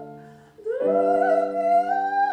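A woman singing in classical style with piano accompaniment. A held note fades away, then after a brief break a new note starts with a slide up and is held.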